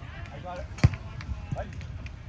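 A volleyball struck by a hand: one sharp, loud slap a little under a second in, followed by a fainter knock, with voices in the background.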